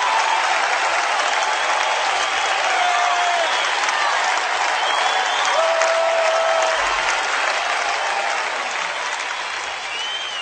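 A large audience applauding, dense clapping with a few short calls over it, slowly fading toward the end.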